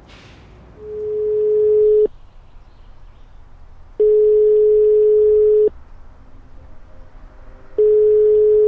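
Telephone ringback tone: a steady single tone about a second and a half long, sounding three times with pauses of about two seconds, as an outgoing call rings and waits to be answered.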